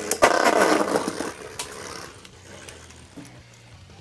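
Two Beyblades clashing in a plastic stadium, Ultimate Valkyrie fitted with the Evolution' driver against its opponent. A sharp hit comes about a quarter second in, then a second of rapid rattling collisions that fades to a faint ticking spin.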